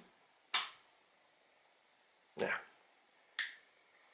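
Two sharp single clicks, about three seconds apart, over a quiet room.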